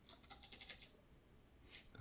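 Near silence with a scatter of faint computer keyboard clicks, a cluster in the first second and a couple more near the end.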